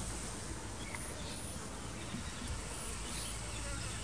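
Wild bees buzzing faintly and steadily, over a low outdoor hiss.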